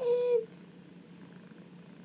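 A tabby cat gives one short meow right at the start, rising and then holding its pitch; the rest is low room tone.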